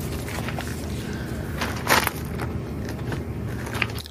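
Shoes scuffing and crunching on loose gravel beside a fat-tire e-bike, with one louder scrape about two seconds in, over a steady outdoor rumble.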